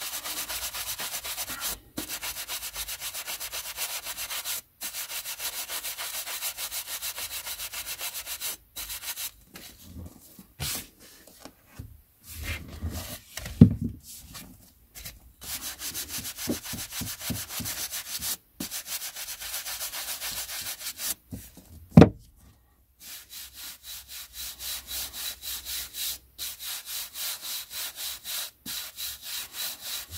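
Stiff bristle brush with a wooden back swept quickly back and forth across the page edges of a stack of old paperbacks, a rapid run of dry brushing strokes that stops and restarts several times while the dust is brushed off. Two sharp knocks break in around the middle.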